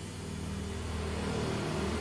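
Peugeot 206's engine idling under the bonnet, a steady low hum that grows slightly louder.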